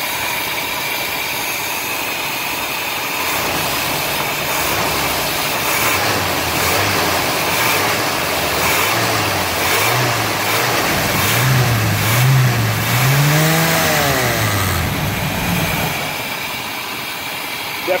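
Carbureted 454 V8 engine of a vintage RV idling, then revved in a series of throttle blips. Its pitch rises and falls several times, highest a little past the middle, before settling back to a steady idle of about 750–800 rpm. It is running a little better with its timing set less advanced.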